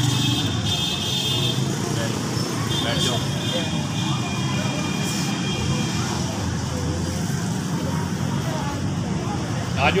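Steady low background rumble of an open-air space, with indistinct voices.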